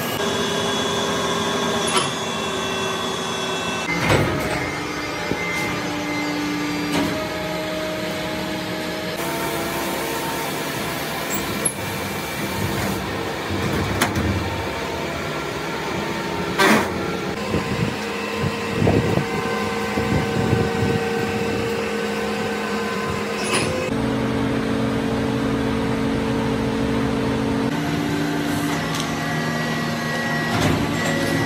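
Steady workshop machinery hum, with a few sharp knocks and clanks now and then.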